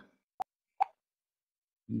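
Two short clicks about half a second apart in otherwise dead silence.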